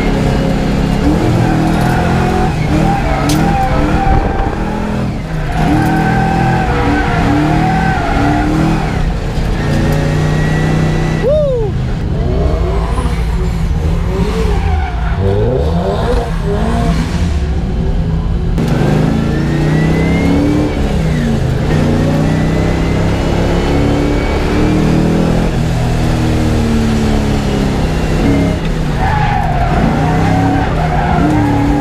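Nissan S13 drift car's engine revving hard and dropping off again and again under throttle, with tires squealing as the car slides.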